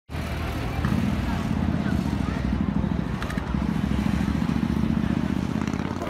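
Outdoor city-square ambience: a steady low rumble under faint voices of a crowd.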